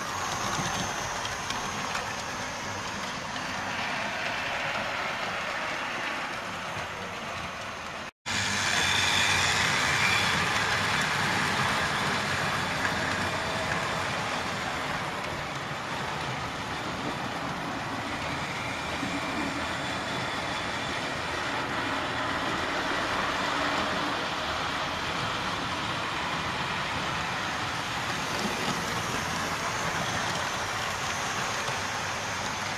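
A 00 gauge model train, a tank locomotive hauling coaches, running along the track with a steady whir and rumble from its electric motor and wheels on the rails. The sound cuts out for an instant about eight seconds in and comes back a little louder.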